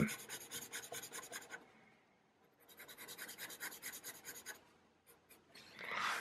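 Black felt-tip marker scribbling on sketchbook paper in two spells of quick back-and-forth strokes with a short pause between, filling in a small drawn shape with solid ink.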